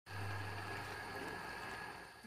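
A pot of bamboo-shoot curry at the boil on a gas stove burner: a steady hiss, with a low hum that fades after about a second.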